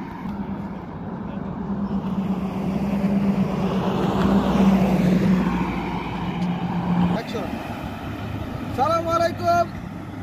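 A car passing by on the road: tyre and engine noise swells to a peak about four to five seconds in, with a steady low hum, then fades away.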